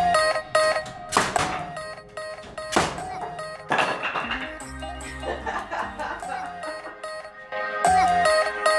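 Background music with three sharp thunks in the first four seconds, unevenly spaced: a pneumatic framing nailer firing nails into wall framing.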